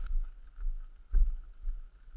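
Wind buffeting the microphone of a camera on a moving dirt bike, in uneven gusts with a thump a little past a second in. Under it is the faint steady note of a KTM EXC 125 two-stroke engine.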